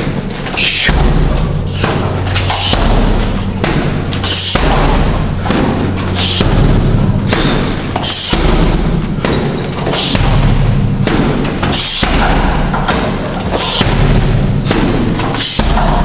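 Background music with a steady beat, over thuds of gloved punches and kicks landing on heavy bags about every two seconds at a slow, even pace.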